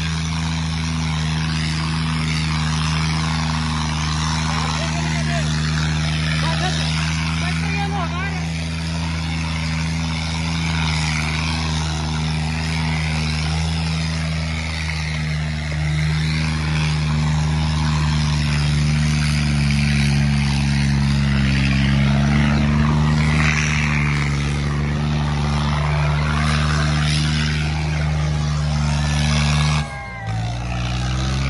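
John Deere tractor's diesel engine running hard and steadily under heavy load as it drags a train of sack-weighted disc harrows through soft soil, its note sagging slightly about two-thirds of the way through. A crowd of onlookers shouts and talks over it.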